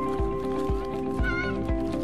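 Background music with held, sustained notes over a steady beat of about two thumps a second. About halfway through, a brief high, wavering squeal rises over the music.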